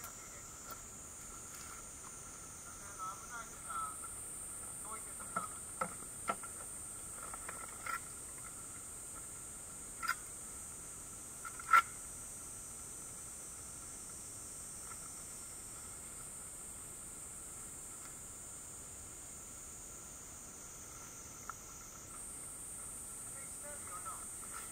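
Steady high-pitched insect drone from the forest, with a thin constant tone beneath it. Scattered short sharp clicks and chirps cut in over it, the loudest about twelve seconds in.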